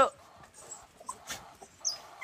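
Young dog giving a short, high whimper near the end, against faint scuffing.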